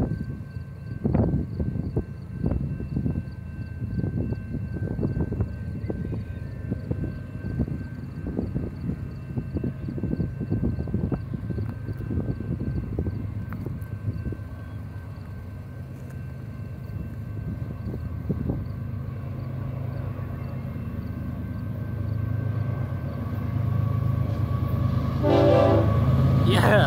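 BNSF freight train's diesel locomotives approaching at speed, their low rumble growing steadily louder over the last several seconds.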